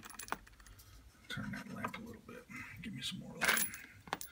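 Fired .223 brass cartridge cases clinking and clicking against each other as they are set down onto a case-lube pad, a few light taps and one louder clink near the end.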